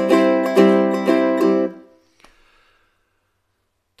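Low-G ukulele strummed on one held chord with banjo fingerpicks, quick down and up strokes in a swing feel (long down, short up). The chord is damped and cut off just under two seconds in.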